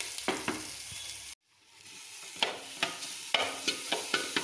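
Shredded jackfruit frying in hot oil in an aluminium pan, sizzling while a metal spoon stirs and scrapes it. There are several sharp scrapes and clinks in the second half. The sound cuts out for a moment just over a second in.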